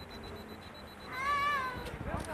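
A single high-pitched, meow-like cry a second in, under a second long, rising and then falling in pitch.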